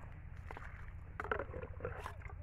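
Liquid fertiliser (urea mixed with water) sloshing and splashing as a small steel cup is dipped into a plastic bucket and poured, in a few short irregular splashes, the biggest a little past halfway. A steady low rumble runs underneath.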